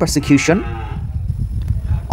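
A man's voice ends a word in the first half-second, then a steady low rumble carries on through a pause in speech.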